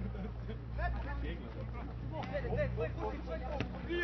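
Voices shouting and calling out across an outdoor rugby field, distant and overlapping, over a steady low rumble. A single sharp tick sounds near the end.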